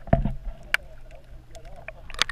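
Muffled water movement around a submerged camera, with a low thump just after the start and a few sharp clicks.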